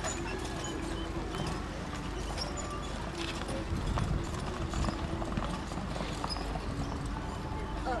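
Hoofbeats of a four-pony team trotting on arena sand, a busy irregular clip-clop of many feet, with voices in the background.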